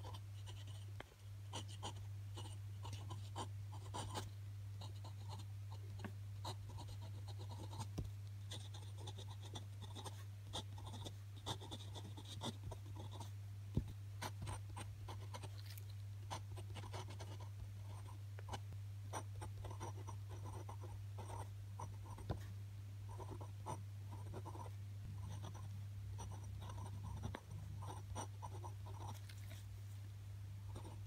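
Glass dip pen nib scratching across textured grid paper as words are written, a continuous run of short scratchy strokes with small clicks as the nib lifts and lands. A steady low hum runs underneath.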